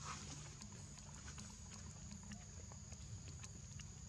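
A steady, faint, high-pitched insect drone over a low rumble, with scattered light clicks. A brief high squeak comes right at the start.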